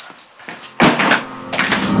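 A door bangs open sharply just under a second in, followed by music coming in with steady sustained tones.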